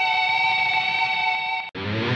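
Guitar demo music playing through the SSL X-Delay plugin: a held chord rings steadily, cuts off abruptly near the end, and a new, lower guitar passage starts straight after.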